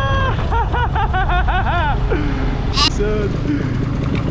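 Steady low rumble of a paramotor's engine and wind on the microphone in flight, with a man laughing over it in a quick run of short bursts during the first two seconds, and a brief hiss near three seconds.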